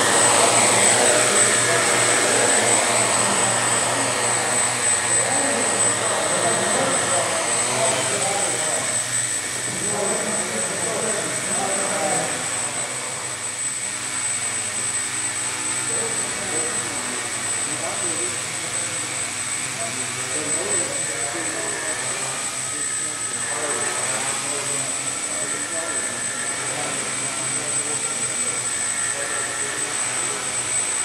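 HK 550 mm quadcopter's four 750Kv brushless motors spinning 12x6 APC propellers in a low hover, a steady multi-tone whir whose pitch rises and falls as the flight controller adjusts motor speed.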